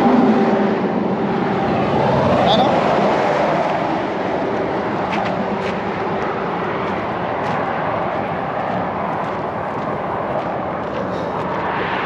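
Highway traffic going by close at hand: a steady rush of tyres and engines, with a louder vehicle passing in the first few seconds.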